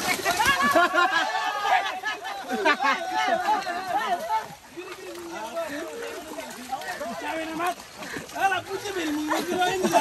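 Several people talking and calling out over one another, with many voices overlapping in the first few seconds and fewer, lower voices after that.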